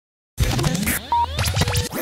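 Electronic radio station intro jingle: after a brief silence it starts abruptly with sweeping whooshes and scratch-like effects over a low bass, with a short high beep about a second in and a lower beep near the end.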